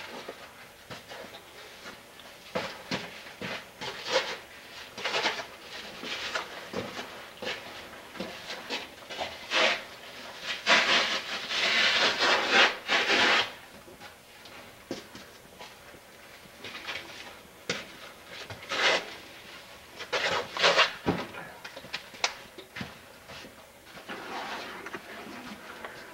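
Irregular scuffing and scraping of shoes and clothing on sandstone as people climb and squeeze through a narrow rock crevice. There is a longer, louder run of rustling and scraping from about ten to thirteen seconds in, and another burst around twenty seconds.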